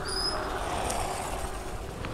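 Motorcycle tricycle's engine idling, a steady low running sound.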